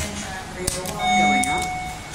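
Electronic beep from the elevator: a single steady tone starting about a second in and lasting under a second. Short clicks come before it, one at the very start.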